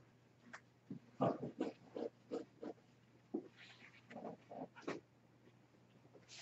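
Brush scrubbing on watercolour paper: short, faint back-and-forth strokes, about three a second, in two bursts, lifting paint out of the neck area.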